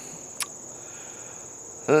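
Insects trilling steadily in a high, continuous tone, with one short click about half a second in.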